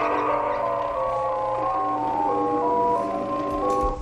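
Synthesized electronic music from three Ounk audio scripts running at once: a sine-tone melody of held, stepping notes layered with a repeating sound through a bank of resonators. The tones cut off together at the end.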